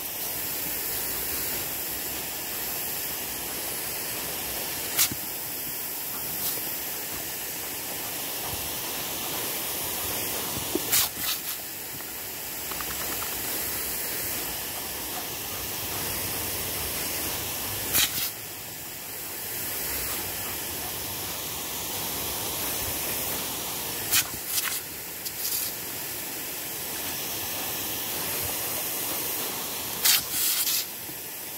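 Lawn sprinkler running: a steady hiss of spraying water, with a few short, sharp clicks scattered through it.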